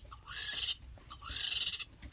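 A woman making two breathy, hissing screeches, each under a second long, in mimicry of a vulture.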